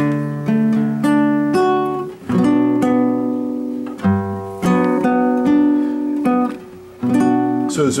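Classical guitar playing a chord progression, each chord struck and left to ring before the next, changing about every half second to a second.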